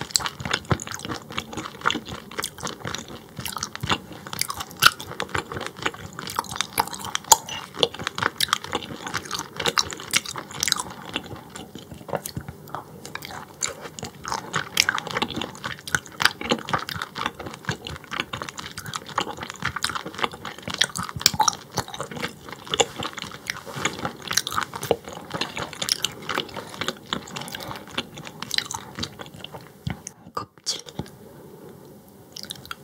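Close-miked chewing of raw croaker (민어), a dense, irregular run of small mouth clicks and bites that goes on without a break.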